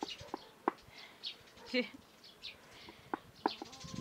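Small birds chirping in a blossoming tree: short, high calls scattered through, with a few sharp clicks among them.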